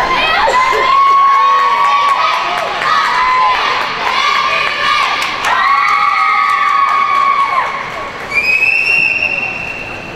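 Spectators cheering, with many high-pitched children's voices shrieking and holding long calls over one another. Near the end a single higher call is held for about a second.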